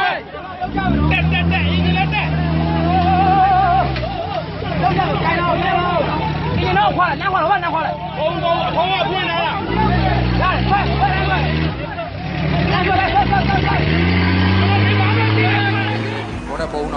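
Jeep Wrangler engine revving under load while stuck nose-down in a mud pit. It rises in pitch about a second in and holds, drops off near four seconds, and revs up again around ten seconds and near the end, under a crowd of voices shouting.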